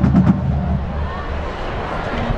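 A few sharp marching-band drum hits near the start as the music stops, then the steady noise of a stadium crowd with nearby voices.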